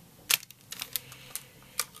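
Small plastic cosmetic packaging being handled: a sharp click about a third of a second in, a few lighter ticks, and another click near the end.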